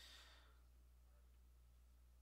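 Near silence: a faint breath out, like a soft sigh, in the first half second, then only a low steady hum.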